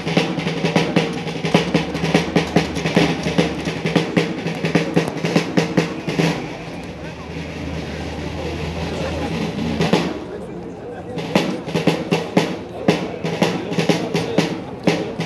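Military snare and bass drums playing a steady, rapid cadence; about halfway through the beat drops to a softer stretch, then a single sharp hit, a brief pause, and the cadence picks up again near the end.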